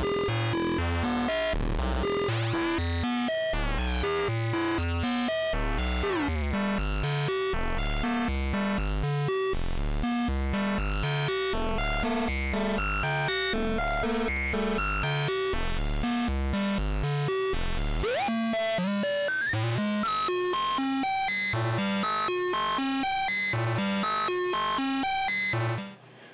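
VCV Rack software modular synthesizer: a square-wave VCO stepped through a note pattern by the SEQ-3 sequencer, its pulse width modulated so the buzzy tone keeps changing colour. Notes change several times a second at an even level, with a few pitch glides, and the deepest bass drops out about eighteen seconds in.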